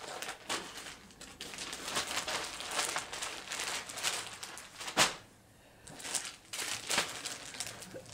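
Project bags crinkling and rustling as they are handled, with one sharp click about five seconds in followed by a brief lull.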